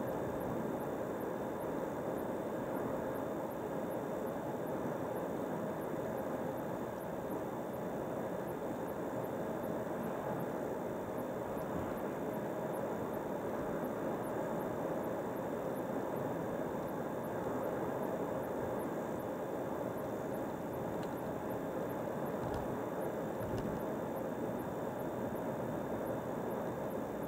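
Steady road and tyre noise inside a car's cabin while it cruises along a highway.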